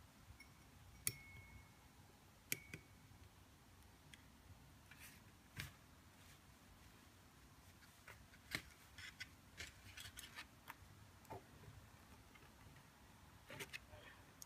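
Faint clinks of a small metal measuring spoon against a porcelain evaporating dish, two with a brief ring, about one and two and a half seconds in, followed by scattered small clicks and taps of handling the chemical tubes.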